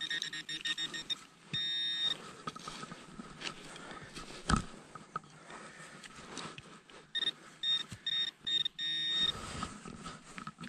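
Handheld metal-detecting pinpointer probing a dug hole and sounding off on a metal target: a continuous high-pitched buzz about a second and a half in, then a run of quick beeps near the end. A single dull thump about halfway through, with soft scraping in the soil.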